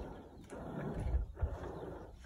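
Faint low rumble with a few soft knocks: handling noise from hands gripping and moving a glider's metal control-rod ball-and-socket joint and its knurled locking sleeve.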